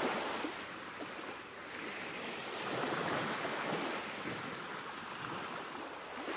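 A steady rush of ocean surf, swelling and ebbing about every three seconds.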